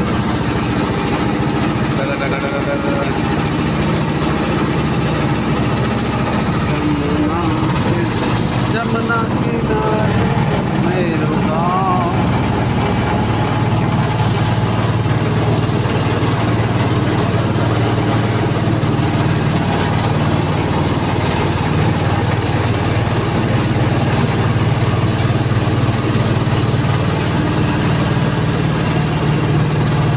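Motor boat engine running steadily as the boat moves across the river, a low continuous hum that grows a little stronger about twelve seconds in.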